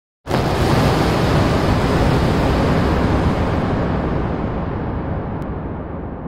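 Intro sound effect: a loud rushing noise burst that starts suddenly, heavy in the low end, then slowly dies away over several seconds as its hiss fades first.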